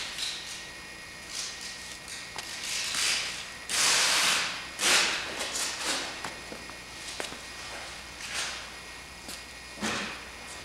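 Footsteps scuffing on a concrete floor, with rustling from clothing and a hand-held camera. There are a few short hissing swishes, the loudest about four seconds in, and some light clicks.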